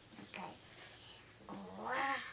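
A toddler's wordless vocalizing: a short sound about half a second in, then a drawn-out babbling call from about a second and a half that dips and rises in pitch and is loudest near the end.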